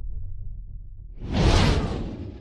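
Intro sound effect for an animated logo: a low rumble dying away, then a whoosh that swells about a second in and fades out.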